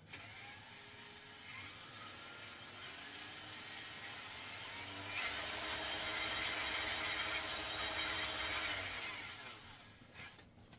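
Small electric motor spinning a paint-covered canvas: a faint whine that climbs in pitch as it spins up, runs louder and steady from about halfway through, then winds down near the end.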